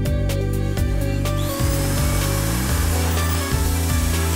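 Corded electric drill starting up about a second in with a rising whine, then boring through the wooden sill plate with a wood bit. Background music plays underneath.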